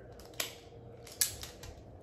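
Laoa self-adjusting wire stripper's spring-loaded steel jaws snipping through a wire: two sharp clicks under a second apart, the second louder.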